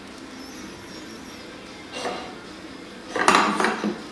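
Small stainless-steel toy pots and utensils of a play kitchen clinking against each other: a single clink about two seconds in, then a louder rattling clatter of metal for most of the last second.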